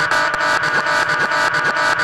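Techno music in a breakdown with no kick drum: a dense, sustained synth chord with fast, evenly ticking percussion over it.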